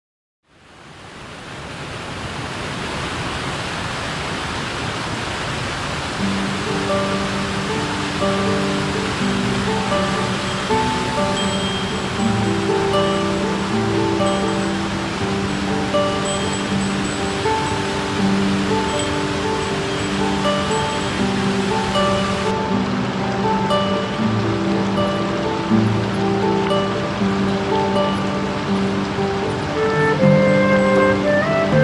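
Rushing water of a rocky mountain stream with a small waterfall, fading in from silence. About six seconds in, background music with held, slowly changing notes joins it and carries on over the water.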